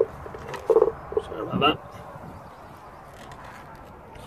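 A man says a couple of short words, then there is only low, steady background noise.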